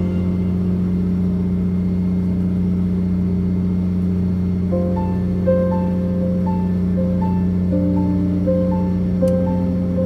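Steady low drone of the fishing boat's engine running throughout. Background music of short, evenly spaced melodic notes comes in about halfway.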